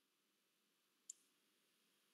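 Near silence, broken by one faint, short click about a second in.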